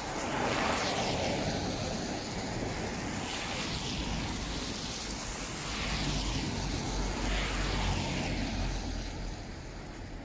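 Cars passing on a wet, slushy road, their tyres hissing through surface water in two swells, one about a second in and another near the end. A low engine rumble runs under the second pass.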